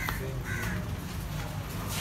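Two short harsh bird calls, near the start and about half a second in, over a steady low rumble of street traffic.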